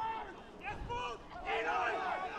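Rugby players and spectators shouting calls at a ruck, heard from a distance through the pitch-side microphone.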